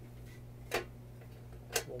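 Two sharp clicks about a second apart as the stainless steel toilet tissue dispenser's door and lock are handled, over a steady low hum.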